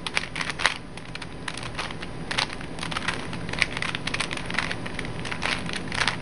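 A Rubik's Cube's plastic layers being turned by hand in quick succession, giving irregular clicks and rattles as the faces snap round. The same short move sequence is being repeated over and over to bring the last corner into place.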